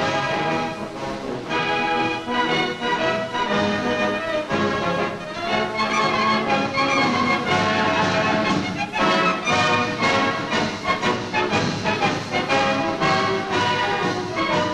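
Orchestral music with brass, playing steadily throughout.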